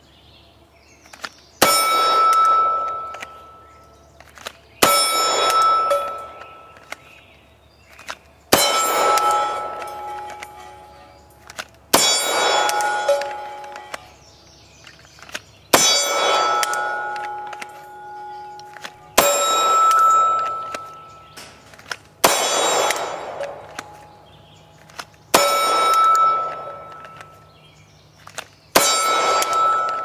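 Slow, aimed fire from an FNP-45 .45 ACP pistol, about nine shots three to four seconds apart. Each shot is followed by a loud metallic clang from a steel plate target that rings on and fades over about two seconds. The two plates ring at two different pitches.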